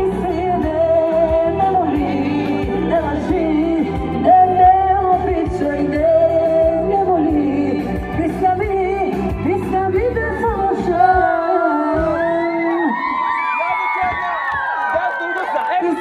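A woman singing live into a microphone over loud amplified backing music from PA speakers. The bass-heavy backing drops out about eleven seconds in, leaving her voice with shouting and calls from the crowd around her.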